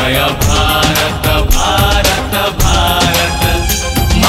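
Patriotic Odia song: male voices singing a drawn-out, ornamented melody over a band with bass and a steady drum beat.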